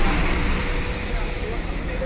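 Outdoor street ambience: a steady low rumble, like passing traffic, under indistinct voices.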